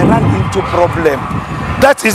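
People talking, with a low rumble under the voices at the start.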